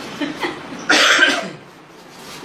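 A person coughing: a few short sounds from the throat, then one loud cough about a second in.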